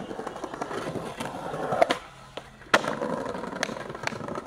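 Skateboard wheels rolling over stone paving, with several sharp clacks of the board. The loudest clack comes a little under three seconds in.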